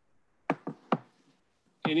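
Three quick, sharp knocks close together, within about half a second, like something hard tapped on a table or near a microphone.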